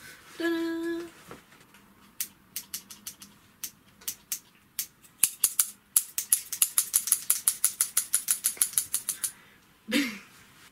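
Scissors snipping, a few scattered snips at first, then a fast run of about six snips a second for several seconds that stops shortly before the end. A short hummed note comes about half a second in.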